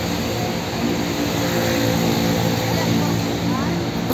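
A steady, even hum of an engine running, with a constant rush of background noise.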